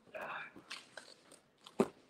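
Handling noise from a fabric purse and a paper card being moved about: a short rustle at the start, a few light clicks, and one sharp knock near the end, the loudest sound.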